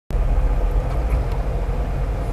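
Road noise inside a moving car's cabin: a steady low rumble of engine and tyres at cruising speed, with a faint steady hum above it.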